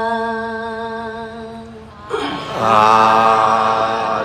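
Singing in a song: one long held note, then a louder, fuller sung phrase with a wavering pitch starting about two seconds in.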